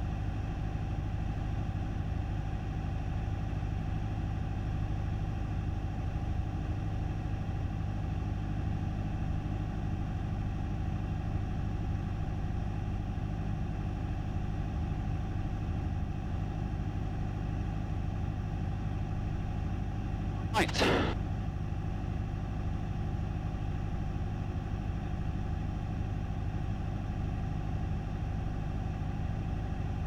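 Cessna 172SP's four-cylinder Lycoming engine and propeller running steadily, heard from inside the cabin as an even drone. A brief louder burst comes about two-thirds of the way through.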